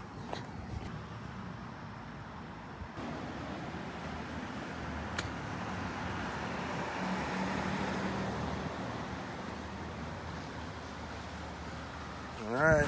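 Street traffic: a vehicle passing along the road, its engine and tyre noise building to a peak about two-thirds of the way through and then fading, over a steady background of town traffic.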